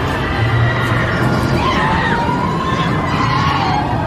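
Slinky Dog Dash steel roller coaster running: a steady rumble of the train on the track, with high wavering cries from the riders.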